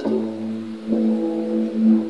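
Left-hand open-voiced chord held on a keyboard: low notes struck together and left ringing, struck again about a second in.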